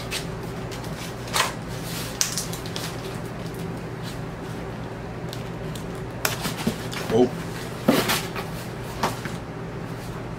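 Cardboard vinyl record mailer being worked open against heavy packing tape: a handful of short, sudden rips and scrapes of tape and cardboard, the loudest about eight seconds in.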